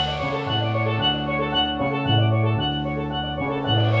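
A live band of steel pan, electric bass guitar and drum kit playing: short ringing steel pan notes over a stepping bass line, with the drums underneath. The cymbal wash thins out after the start and swells again near the end.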